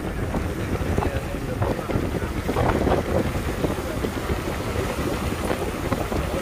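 Wind buffeting the microphone in a steady low rumble, with waves washing in over shoreline rocks.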